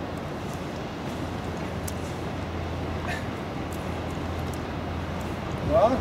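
Steady wind noise on the microphone: a low, even rumble with a hiss over it.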